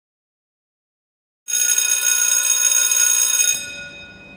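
Loud electric bell ringing steadily for about two seconds, starting abruptly a second and a half in, then stopping and ringing on faintly as it dies away.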